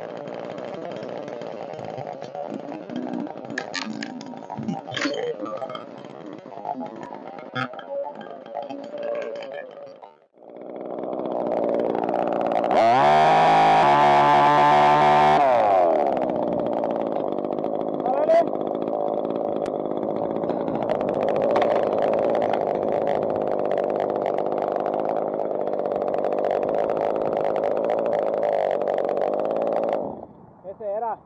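A chainsaw revs up, rising in pitch to full throttle for a few seconds, then runs on at a steady level. Before it starts, a quieter stretch with scattered clicks.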